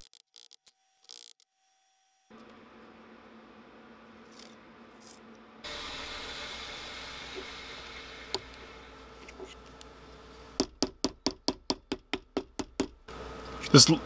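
Small hammer tapping the parts of a homemade nail-core humbucker pickup together: a quick run of about a dozen light knocks, some five a second, lasting a couple of seconds late on, over a faint steady hiss.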